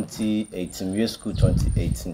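Steady high-pitched chirring of crickets beneath a man's talking voice; a low rumble joins from a little past halfway.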